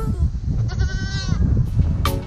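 A goat bleats once near the middle, a wavering call under a second long, over a low rumbling background noise.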